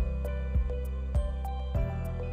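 Background music: soft held chords over a steady beat.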